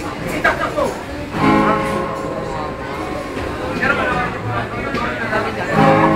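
Guitar strummed: a chord is struck about one and a half seconds in and rings on, and another is struck near the end, over voices.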